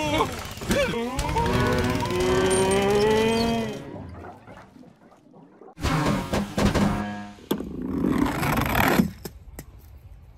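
Animated film soundtrack: cartoon tractors lowing like cattle in long gliding calls, with music under them. After a short lull a loud sound breaks in suddenly about six seconds in.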